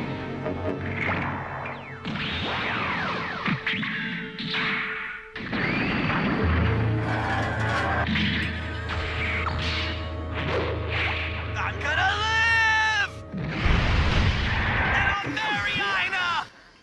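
Animated mecha fight sound effects: whooshes and metallic smashes of two giant mobile suits grappling, with the Gouf's heat rod lashing out, over dramatic background music. A steady low hum runs through the middle, and a man yells near the end.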